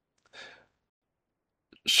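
A short, faint breath out from a person about half a second in, then quiet; just before the end a small mouth click and a man's voice starting to speak.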